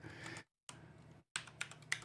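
Faint keystrokes on a computer keyboard as a command is typed, with a quick run of clicks near the end.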